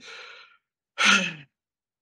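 A man sighing: a faint breath, then about a second in, a louder audible sigh whose pitch falls away at its end.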